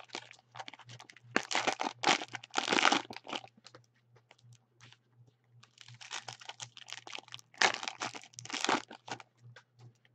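Clear plastic wrapper of a basketball card pack being torn open and crinkled by hand, in two bouts of crackling with a short lull between.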